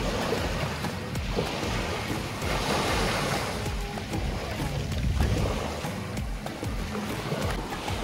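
Small waves breaking and washing up the beach, with wind rumbling on the microphone; one wash swells louder about three seconds in.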